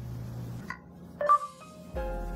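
Galaxy Nexus phone giving Google voice search's short electronic chime about a second in, the tone that signals it is ready to listen. Soft background music plays under it.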